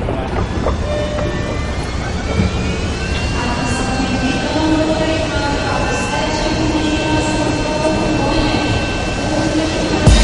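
Twin-engine jet airliner's engines whining over a steady rumble. The whine rises in pitch a couple of seconds in and then holds steady, as the engines spool up.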